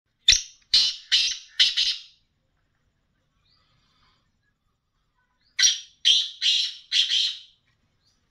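Caged black francolin calling. It gives a harsh phrase of about five rasping notes, then a second phrase of about five notes some four seconds later.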